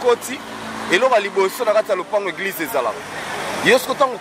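A man talking, with a car driving past in the background.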